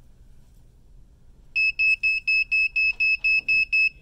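Wall-mounted digital thermometer sounding its alarm: a quick run of about ten short, high beeps, about four a second, starting about one and a half seconds in. This is the warning for a reading over 100 degrees.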